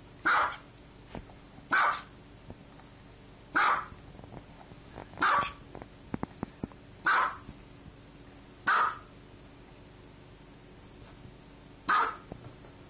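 Small dog barking in single high-pitched barks at a steady pace, about one every second and a half to two seconds, seven in all, the last right at the end.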